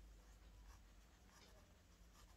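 Faint scratching of a pen writing by hand on a paper page.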